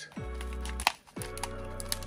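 Background music with steady held tones, over the handling of a cardboard trading-card hanger box being opened: a sharp crack a little under a second in and a few lighter clicks and rustles near the end.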